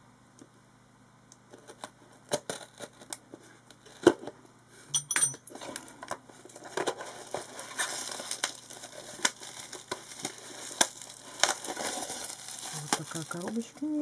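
Plastic parcel packaging and bubble wrap being handled and opened by hand: a few sharp clicks and taps, then steady crinkling and rustling from about halfway through.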